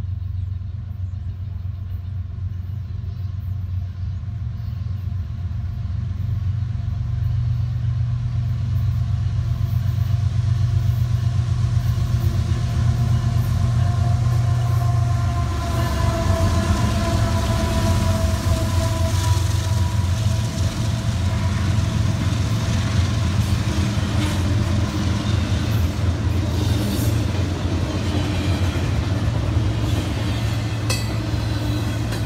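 CSX diesel freight locomotives passing close by with a deep, steady engine rumble that grows louder as the lead unit goes by, a higher whine joining in about halfway through. Near the end the stack cars' wheels clatter over the rails.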